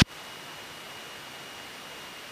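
Steady, even hiss with a faint, high, steady tone running through it. This is the line noise of the aircraft's headset intercom feed, with no engine sound coming through.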